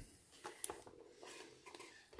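Faint handling of a cardboard box and plastic packaging: a few light taps and rustles.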